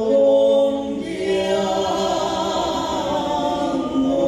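Two male voices holding long sung notes in harmony over acoustic guitars, changing to a new held chord about a second in.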